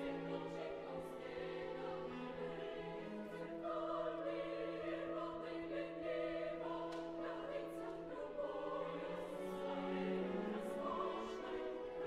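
Live recording of an opera chorus singing long, held notes over an orchestra.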